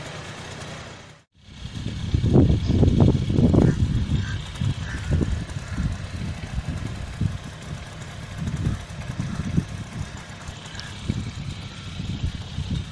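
Riding noise heard from a moving vehicle: an uneven low rumble of wind and road noise in irregular surges, strongest a couple of seconds in. The sound drops out for a moment about a second in.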